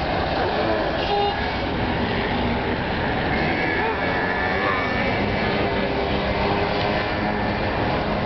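Steady road traffic noise from passing cars, with voices and a laugh about the first second.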